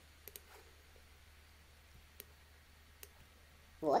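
A few sharp, scattered computer mouse clicks as lines are drawn on screen, over quiet room tone.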